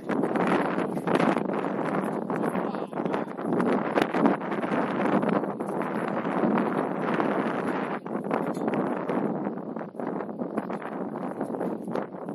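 Wind buffeting the camera's microphone: a loud, uneven rumbling rush that swells and dips throughout.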